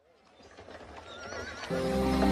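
A horse whinny sound effect, with a wavering pitch, fading in at the opening of a Christmas song's recording; the song's music comes in loudly near the end.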